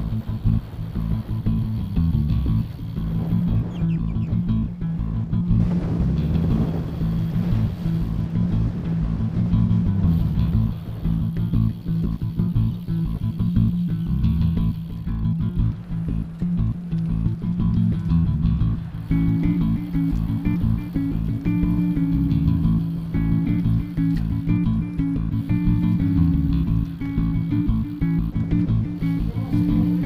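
Background music, a guitar-and-bass track with a steady low bass line; a higher part comes in about two-thirds of the way through.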